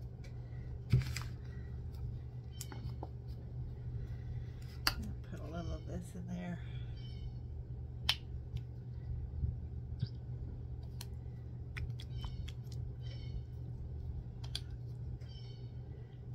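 A metal spoon tapping and clicking in a metal cup of thick cornstarch-and-glue paste, in scattered light clicks over a steady low hum.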